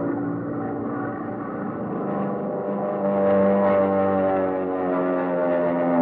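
Radio sound effect of a propeller plane in a power dive: a steady droning engine whine that grows louder about halfway through.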